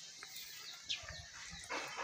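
Faint outdoor background with short, high bird calls, including a brief falling chirp about a second in, and a short burst of noise near the end.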